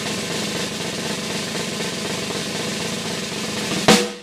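Snare drum roll sound effect added in the edit, holding steady and ending in one sharp loud hit near the end, a suspense build-up for a first taste.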